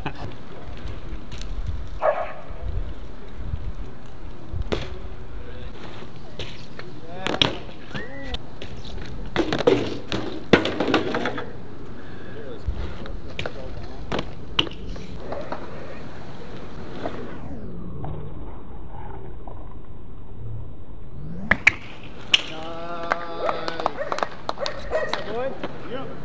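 BMX bike tyres rolling over concrete with a steady rumble, broken by several sharp clacks and thuds as the bike lands and strikes the ground.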